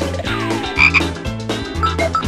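Cartoon theme music with comic frog-croak sound effects over a bass beat pulsing about twice a second. A falling whistle-like glide is followed by two short high chirps about a second in.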